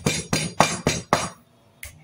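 Raw pork chop being pounded on a wooden cutting board to tenderize it: quick, even knocks at about four a second that stop about two-thirds of the way through.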